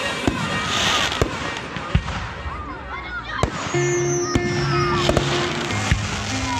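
Aerial firework shells bursting in the sky: several sharp bangs at irregular intervals, over a pop song with singing played over loudspeakers.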